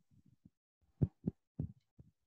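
Three soft low thumps in quick succession about a second in, with a few fainter knocks around them in an otherwise quiet room.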